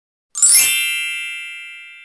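A bright chime sound effect, struck once about a third of a second in and ringing out as it fades over about two seconds, marking a change of slide.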